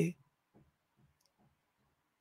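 Near silence in a pause in a man's speech, with a few faint, soft clicks scattered through it.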